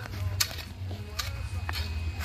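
Hoe blade chopping into dry, stony soil around a cassava plant, three sharp strikes over a low rumble.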